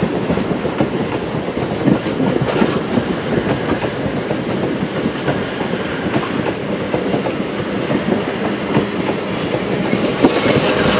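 Passenger coaches of a train rolling past close by, their wheels running over the rails in a steady clickety-clack.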